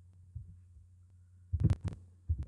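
Faint steady low hum, then about a second and a half in a quick run of sharp clicks and low thumps from hands working a computer mouse at the desk.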